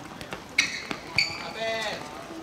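Sounds of a seven-a-side football game on a hard court: sharp thuds of the ball and feet, two short high squeaks about half a second and a second in, and a brief shout from a player near the end.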